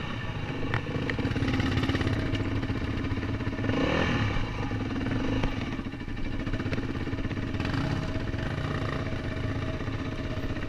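Dirt bike engine running under load on rough ground, the revs rising briefly about four seconds in, with a few sharp knocks and clicks from the bike over rocks.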